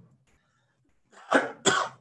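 A man coughing twice in quick succession, about a second in, from a frog in his throat.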